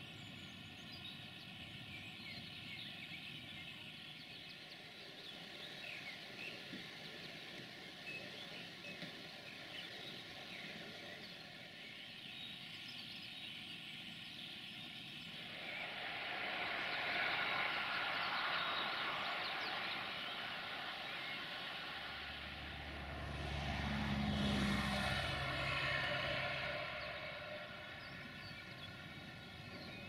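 Outdoor background with a distant engine rumble that swells twice, in the second half and loudest about three-quarters through, then fades.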